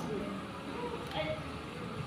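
A pause in a woman's amplified talk: low room tone of the hall, with faint brief voice sounds about a second in.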